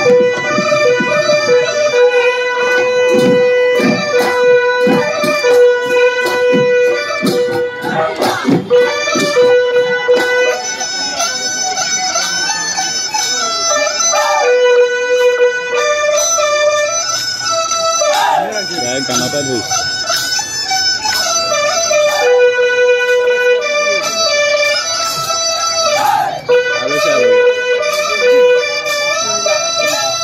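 Live Bihu folk music: a reedy wind instrument playing a melody of long held notes, with a run of dhol drum strokes over roughly the first nine seconds and voices singing later on.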